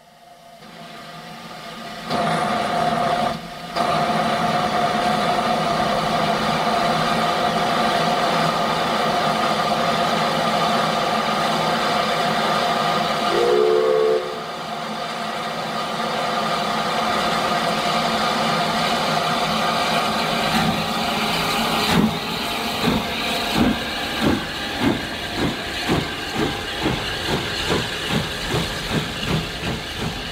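Steam tank locomotive standing with a loud, steady hiss of escaping steam. A short whistle blast comes about halfway through. It then pulls away with exhaust chuffs, about two a second and quickening, as its coaches roll past.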